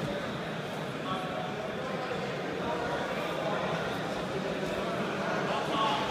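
Indistinct voices over a steady background murmur of hall noise.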